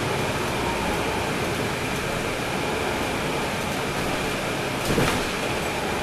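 Steady interior noise of a 2012 NABI 40-SFW transit bus on the move, heard from a seat near the rear, where its Cummins ISL9 diesel engine sits, with a faint steady high whine. A single brief thump about five seconds in.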